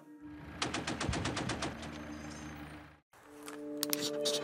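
A burst of automatic gunfire, about ten rapid shots in a little over a second, over a low sustained music drone. Near three seconds in the sound drops out briefly, and then soft closing music begins.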